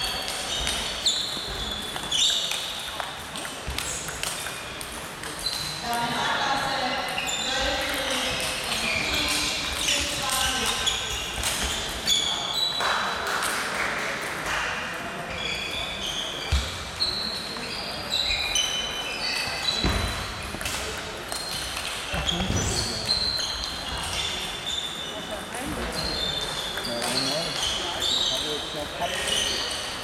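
Table tennis balls clicking off bats and tables, many rallies overlapping across a busy sports hall, with players' voices talking in the background.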